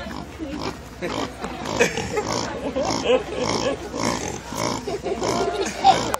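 Pig grunting in short repeated grunts, about two a second, while its belly is rubbed. People laugh and talk over it.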